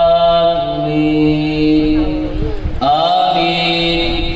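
A man reciting a naat through a microphone, holding long sung notes. The pitch steps under a second in and swoops to a new note about two and a half seconds in.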